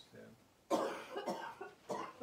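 A person coughing: a sudden loud cough about two-thirds of a second in, followed by a couple of shorter coughs.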